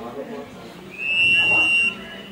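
Referee's whistle blown once, a single shrill blast of about a second starting about a second in, over background voices.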